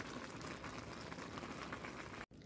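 Spinach boiling in its liquid in a pot on the stove as it cooks down: a faint, steady bubbling and crackle.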